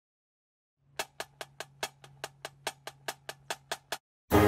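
A rapid, even count-in of sharp percussion clicks, about five a second, starting about a second in over a faint low hum. It leads into the marching band's fight song.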